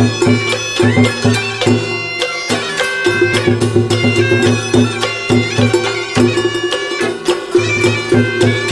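Vietnamese chầu văn (hát văn) ritual music: a reedy, pitched melody over pulsing low notes and a quick, steady percussion beat.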